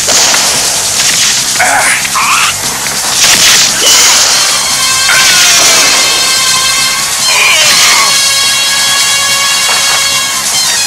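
Cartoon fight sound effects: a series of swishing swings and hits, with background music underneath.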